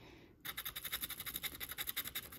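Plastic scratcher rubbing quickly back and forth over the coating of a scratch-off lottery ticket, in rapid, even strokes that start about half a second in.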